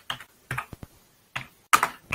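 Computer keyboard being typed: a handful of separate keystrokes at an uneven pace, the loudest near the end.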